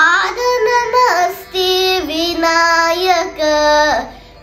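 A young boy singing a Carnatic devotional song in raga Nata, drawing out several long held notes with pitch glides between them and short breaths in between.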